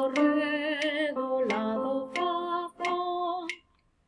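A woman singing unaccompanied, the closing notes of a sight-singing melody in F major: a held low note, then two separate held notes on the tonic F, ending about three and a half seconds in.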